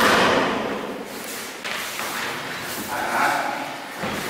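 A body hitting the padded practice mat as the thrown partner takes a breakfall (ukemi): one loud thud right at the start, followed by softer bumps and movement on the mat as the throw is repeated.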